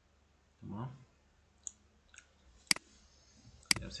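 Computer mouse clicking: a few single clicks, the sharpest two about a second apart near the end.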